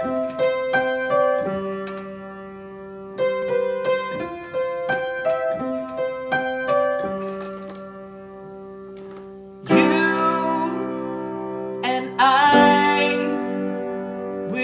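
Upright piano playing a slow intro of separate notes and broken chords. About ten seconds in the sound grows louder and fuller, and a singing voice comes in near the end.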